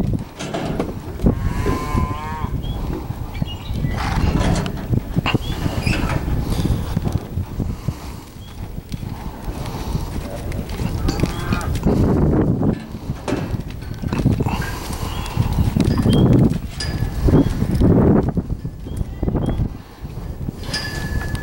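Hoofbeats of a horse loping on soft arena dirt, with a short wavering livestock call about two seconds in and another near the middle.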